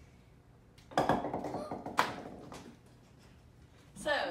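Small rubber balls from a stacked ball-blaster bouncing toy striking a wooden tabletop: a sharp knock about a second in, a rattle of quick bounces fading away, and a second sharp knock about two seconds in.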